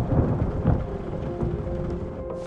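Thunder rumbling over steady rain, slowly fading, with soft held music tones coming in about halfway.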